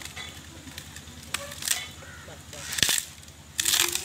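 Wooden stick cracking and splintering as it is levered between two tree trunks to break it. There are a few small cracks, a sharp snap just before three seconds in, and a louder splintering crackle near the end.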